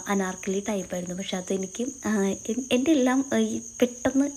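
A woman's voice talking in quick phrases, over a steady high-pitched whine that does not change.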